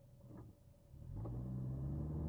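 Car engine and road noise heard from inside the cabin: a steady low drone that comes in and grows louder about a second in, after a couple of faint clicks.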